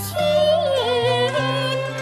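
Cantonese opera singing: a female voice sings a wavering, ornamented line over instrumental accompaniment with sustained low notes, the voice entering just after the start.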